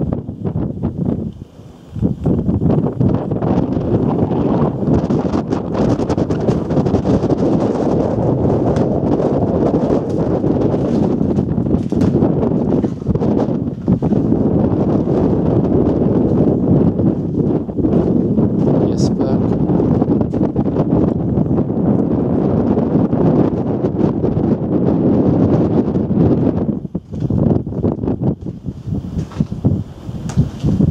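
Wind buffeting the camera microphone: a loud, steady low rush that dips briefly about a second and a half in and again near the end.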